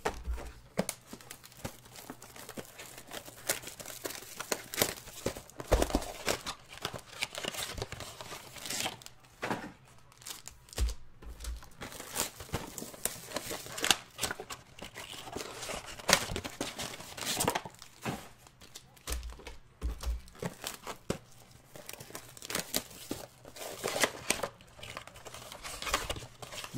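Foil trading-card pack wrappers and a cardboard blaster box being handled and torn open: irregular crinkling and tearing, with a few dull knocks as packs are set down.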